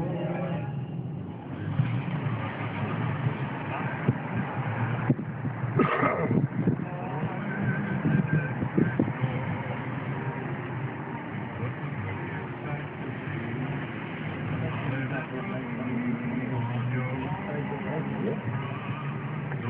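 Steady low engine and road noise of a moving car, with a brief louder noise about six seconds in.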